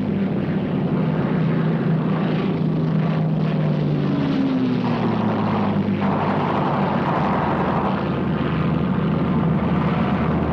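Piston aircraft engines droning steadily and loudly. Partway through, one engine tone slides lower over about two seconds.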